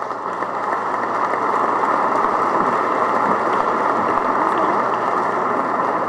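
Audience applause in a large hall, building over the first second and then holding steady.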